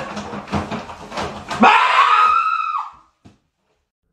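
A startled scream: one loud, high cry of about a second, rising and then falling in pitch, about halfway through, after a few knocks and rustling. The sound cuts off abruptly.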